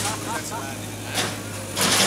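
JCB backhoe loader's diesel engine running steadily while its bucket breaks into a brick shopfront, with crashes of falling masonry and debris about a second in and again near the end.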